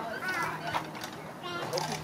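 Children's voices and chatter during play, with a few short clicks and a steady low hum underneath.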